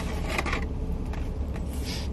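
Close-up eating sounds of fried chicken being bitten and chewed, with two short crunches, one about half a second in and one near the end, over a steady low hum.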